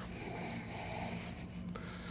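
Quiet outdoor ambience: a high, fast trill for about the first second and a half, then stops, over a low steady hum.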